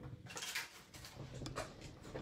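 A few soft rustles and light taps of paper scraps and a handheld paper punch being handled on a craft mat.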